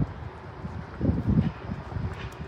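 Wind buffeting the phone's microphone in irregular low gusts, swelling about a second in.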